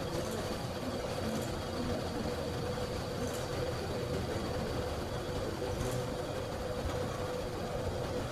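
Steady background noise with a constant hum and a few faint, short clicks.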